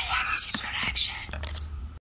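A person whispering close to the microphone, with a couple of sharp hissing sounds, and a few light clicks from the phone being handled as the level falls away near the end.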